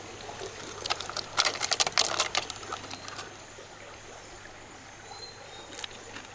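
Water trickling steadily in a jungle stream, with a quick run of crackling plastic clicks lasting about a second and a half a second in as a cut plastic-bottle fish trap is handled.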